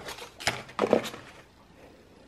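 Tissue paper and cards being handled: a few sharp rustles and knocks in the first second, then quiet handling.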